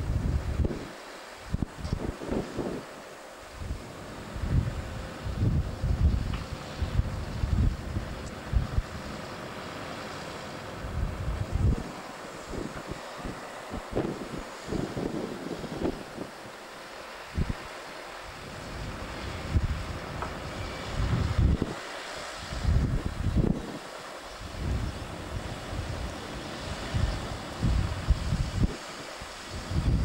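Wind buffeting the camera microphone in irregular gusts, a low rumbling that swells and drops every second or two over a faint steady hiss.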